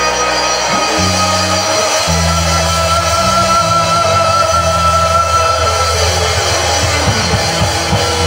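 Live rock band playing through the PA: guitar and drum kit over a moving bass line, with a long held note for several seconds early on.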